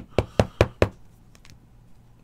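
Five quick knocks on the tabletop, about five a second, all within the first second.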